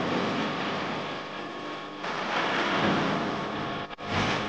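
Live gospel band music heard as a dense wash dominated by drum-kit cymbals, with faint held pitches underneath. It cuts in abruptly just before and dips sharply for a moment near the end.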